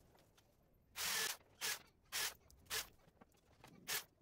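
Electric drill boring holes through wooden slats in several short rasping bursts: the longest about a second in, then three or four briefer ones.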